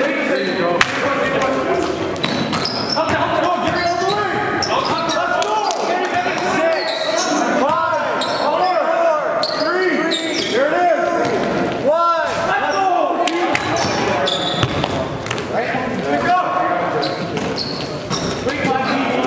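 Live basketball play on a gym court: the ball bouncing on the hardwood, sneakers squeaking in short bursts as players cut and stop, and players' voices calling out. The squeaks are busiest in the middle stretch.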